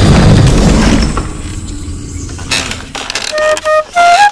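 A loud, low boom that fades away over the first two seconds. About three seconds in, a bamboo flute starts playing two short held notes.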